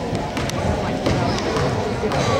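Basketball dribbled a few times on a hardwood gym floor at the free-throw line, over a steady murmur of spectators' voices.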